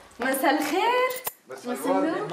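A woman's voice, rising in pitch, in two short stretches with no recognisable words, along with a few light metallic clinks.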